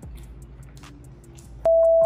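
Faint background music with small clicks, then about one and a half seconds in a loud, steady single-pitched beep starts and lasts about half a second: the test tone of an edited-in colour-bar screen.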